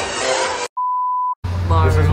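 Party music and chatter stop dead, and after a moment of silence comes a single electronic beep, one steady pitch lasting about half a second. It is followed by the steady low hum of a passenger train's interior, with voices.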